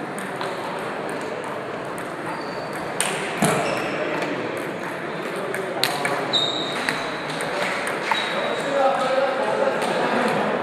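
Table tennis balls ticking off tables and bats in several rallies at once, in irregular sharp clicks, over a steady murmur of voices in a large hall.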